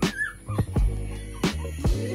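Background music with a steady beat, and over it a brief high whimper from a one-month-old poodle puppy shortly after the start, while it is being dosed with dewormer from an oral syringe.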